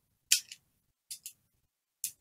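Plastic Pyraminx puzzle being turned by hand: a short clicking scrape as a piece turns, then two quick light clicks about a second in.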